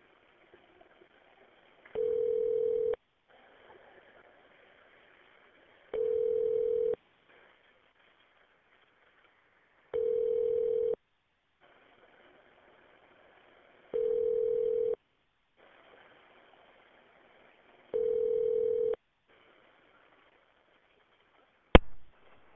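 Telephone ringback tone on a transferred call: five one-second rings, one steady pitch, about four seconds apart over faint line hiss. A sharp click comes just before the end.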